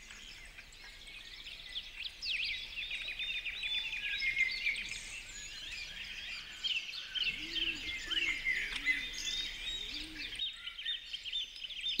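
A chorus of small birds chirping: many quick, high, overlapping chirps.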